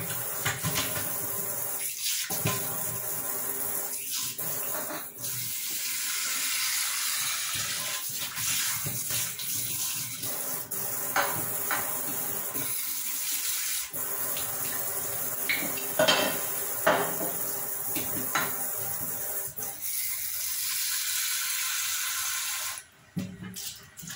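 Kitchen tap running steadily into a stainless steel sink as dishes are rinsed under the stream, with scattered knocks and clinks of the dishes. The water cuts off near the end.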